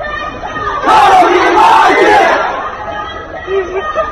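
Hundreds of students shouting the same four-syllable Chinese obscenity together as a crowd chant. It swells loudest from about one second in and eases off after three seconds.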